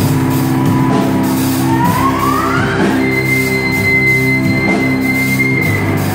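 Live rock band of electric guitars, bass and drum kit playing, with drum hits throughout. About two seconds in, a high lead note slides upward and is then held steady until near the end.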